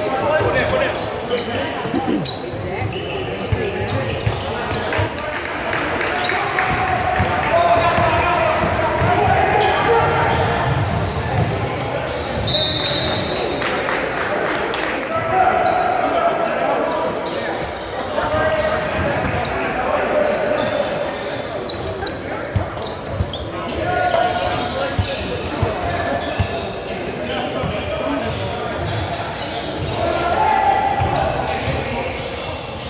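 A basketball dribbled and bouncing on a hardwood gym floor during a game, in the echo of a large gymnasium, over the voices of players and spectators calling out and chatting.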